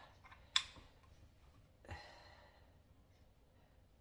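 Aluminium beer can being opened: a sharp click of the pull tab about half a second in, then a softer hiss near two seconds that fades away.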